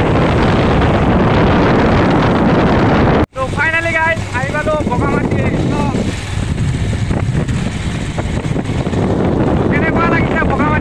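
Heavy wind buffeting on the microphone of a moving motorcycle. It cuts off abruptly about a third of the way in, after which softer wind noise continues under a singing voice.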